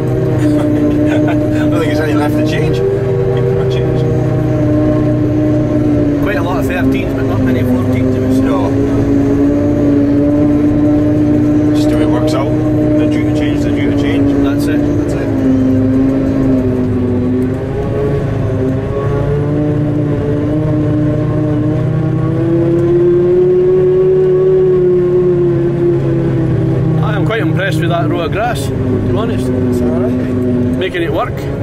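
Claas Jaguar 950 forage harvester running under load as it picks up a grass swath, heard from inside the cab: a loud, steady machine drone whose pitch drifts slowly up and down.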